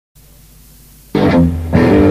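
Faint tape hiss, then about a second in a punk rock band comes in suddenly and loudly with electric guitar and bass chords.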